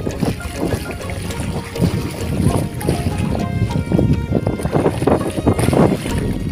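Background song playing over seawater washing and splashing against a concrete seawall, with some wind on the microphone.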